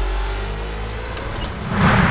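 Logo-transition sound effect: a deep rumble under a slowly rising tone, then a swelling whoosh that peaks near the end.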